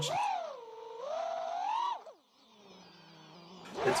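An FPV quadcopter's Brotherhobby UC 2207 1750KV brushless motors and props whine in flight. The pitch dips and then climbs with the throttle, and about two seconds in the throttle drops off, leaving only a faint low hum.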